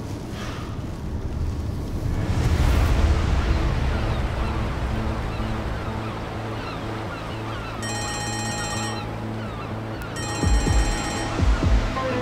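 A dramatic background score of sustained held tones, with low thumps near the end, over a steady rushing noise like wind and waves.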